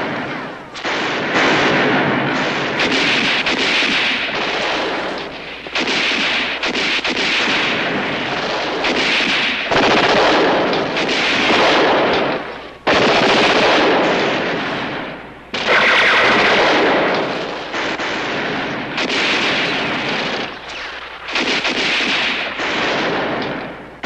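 Heavy battle gunfire: machine-gun and rifle fire almost without a break, in long stretches with brief lulls every few seconds.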